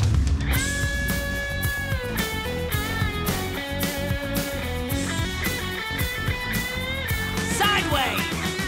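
Electric guitar solo in a rock song, with a long held note about half a second in, then quicker runs of bent notes over a steady beat.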